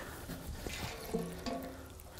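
Liquid pouring from a watering can's spout onto the potting soil in a plastic pot, a steady trickle and splash.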